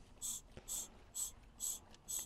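Hand vacuum pump being worked about twice a second, each stroke a short hiss of air. It is drawing vacuum on the pipe to the large turbo's wastegate actuator to test the actuator.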